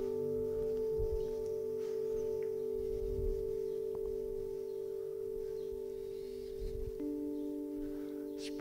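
Singing bowl ringing on after a strike: a steady hum of a few pitches that slowly fades, with a lower tone joining near the end.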